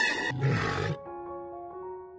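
A whale call with many overtones fades out at the very start. About a third of a second in comes a short, loud, rough animal roar lasting about half a second. After it, soft background music with sustained stepping notes plays.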